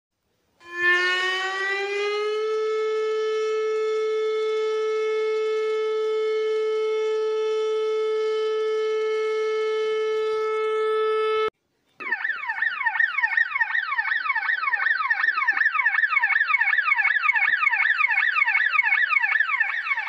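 Emergency-alert siren sound. It winds up over about two seconds to a steady high tone that cuts off abruptly about eleven and a half seconds in. After a brief gap, a second siren pattern follows: quick rising sweeps repeated several times a second.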